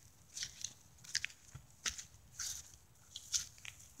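Faint footsteps crunching on garden soil and dry leaves: a handful of short, irregular crackles.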